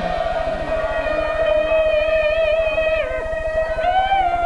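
Peking opera accompaniment: the jinghu fiddle leads the ensemble in an unbroken instrumental passage, one melodic line held and wavering in pitch, during the dan's water-sleeve dance.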